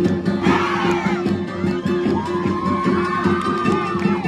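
Many voices shout together in a short burst about half a second in, over dance music with a steady drone and a beat. From about two seconds in, one voice holds a long call that rises and then stays level.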